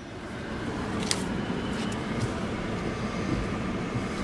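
Car running and rolling slowly, heard from inside the cabin as a steady low rumble that grows a little louder in the first second. There is a faint click about a second in.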